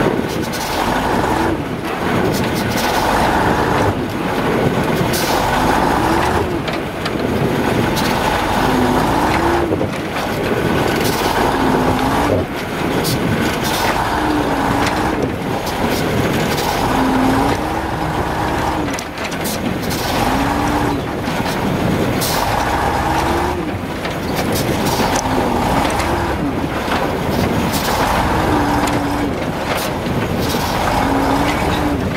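Ural logging truck's YaMZ-238 V8 diesel labouring under heavy load on a snowy uphill, with its revs surging up and falling back every two or three seconds as the truck lurches forward in jerks, held back by the crawler it is towing. Sharp knocks come now and then over the engine.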